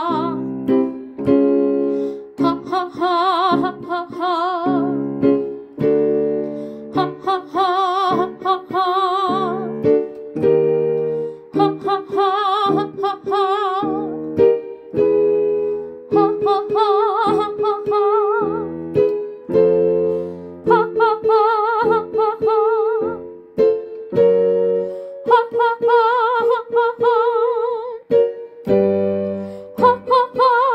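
A woman singing a vocal warm-up exercise on 'ha' over instrumental accompaniment, the sung notes held with vibrato. The pattern repeats several times, each time a step higher in pitch.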